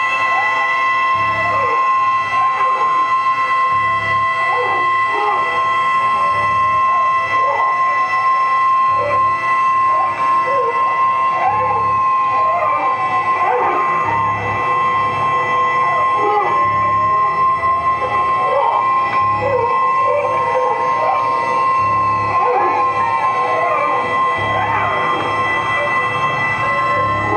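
Live electronic noise music from a rig of electronics and effects pedals, including an echo/delay pedal: steady high-pitched drones with many howling, swooping pitch glides over a low pulse that repeats a little more than once a second.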